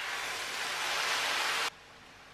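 Coconut milk poured from a cup onto rice and chicken in a hot pan, a steady hiss of liquid hitting the pan that cuts off abruptly shortly before the end.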